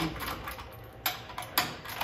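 A few sharp metallic clicks and knocks, about a second in and twice more shortly after, from the metal lockdown bar and barrel canisters of a centrifugal barrel finishing machine being handled by hand.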